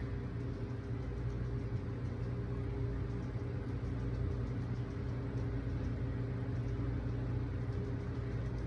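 A steady low hum of room background noise, even throughout, with no voice.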